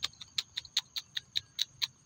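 A rapid, fairly even run of sharp, high clicks, about five a second, stopping shortly before the end.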